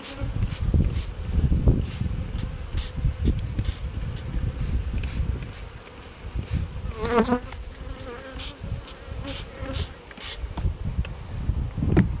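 Honey bees buzzing around an open hive, a steady hum with a louder sweep about seven seconds in as a bee flies close past the microphone.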